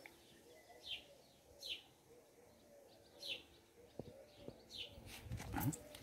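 A bird repeating a short, sharp descending chirp about once every second or so, with faint low cooing calls running beneath it. Clicking and rustling start near the end.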